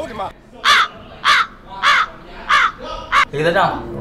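Five harsh caws like a crow's, evenly spaced a little over half a second apart, in a pause between words.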